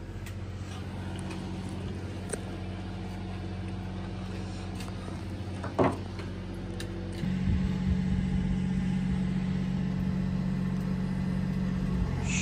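A motor running steadily with a low hum that gets louder about seven seconds in, with one short knock a little before that.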